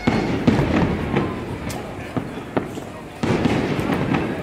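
Fireworks display: a quick series of sharp aerial shell bangs, roughly two a second, over rumbling booms. It is loudest just after the start and again about three seconds in.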